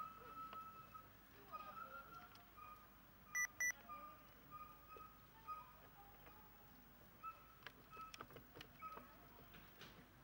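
Two short electronic beeps in quick succession about three and a half seconds in, over a very faint background with a few scattered faint tones and clicks.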